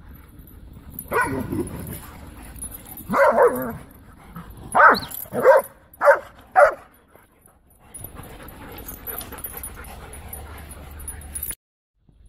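Dogs barking and yipping at play in a run of short bursts, four of them in quick succession about five to seven seconds in. The sound cuts out abruptly just before the end.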